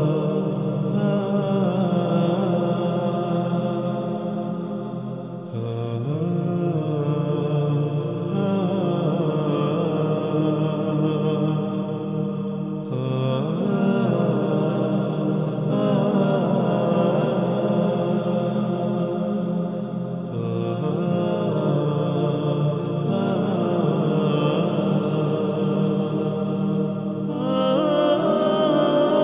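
Background chant-style vocal music: sung voices holding long, droning low notes under a gliding melody, with a new phrase starting every few seconds.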